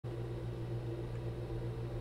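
A heater running with a steady, even hum.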